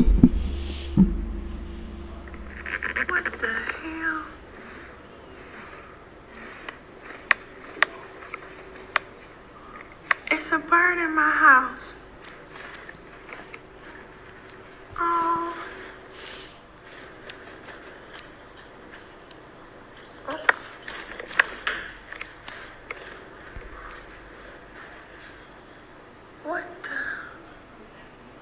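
Northern cardinal indoors giving repeated sharp, high chip calls, about one to two a second.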